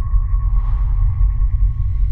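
Intro soundtrack sound design: a deep low drone under a single steady high tone, with a soft swell rising about half a second in.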